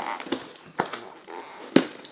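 Scissors cutting into a cardboard box: three sharp snaps, the loudest near the end, with faint cardboard rustling between them.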